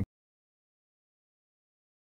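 Dead silence: the sound cuts off abruptly at the very start and nothing at all is heard after it.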